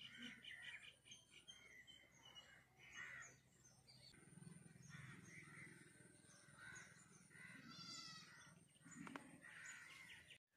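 Faint birds chirping and calling, many short repeated notes, with a harsher, raspier call about eight seconds in.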